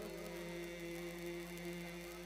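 A male naat reciter holding one long, steady sung note over a public-address system, slowly getting quieter.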